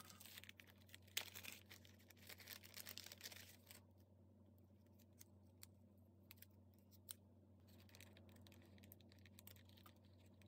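Faint rustling and small sharp clicks of an adhesive Velcro dot being peeled from its backing and paper being handled, busiest in the first four seconds, then only scattered ticks.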